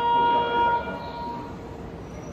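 A long, steady horn-like railway signal tone with even overtones, cutting off about a second in, then quieter station noise.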